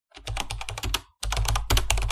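Computer keyboard typing sound effect: rapid keystrokes in two runs, with a short break about a second in.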